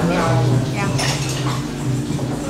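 A metal spoon clinking against a small glass dessert cup as mango sticky rice is scooped, with a bright clink about a second in.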